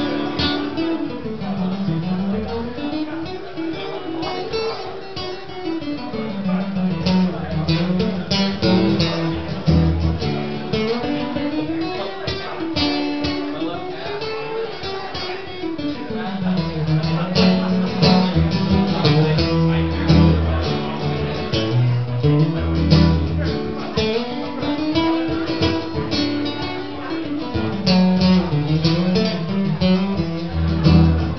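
Acoustic guitar strummed through an instrumental stretch of a song, with a low wordless line rising and falling every few seconds under it.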